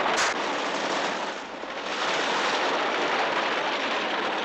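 Loud rushing noise that swells and ebbs, with one sharp crack about a quarter second in.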